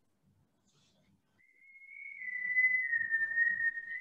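Near silence at first; then, about a second and a half in, a steady high-pitched whistling tone comes in and holds, wavering slightly and dipping a little in pitch, with faint low noise under it.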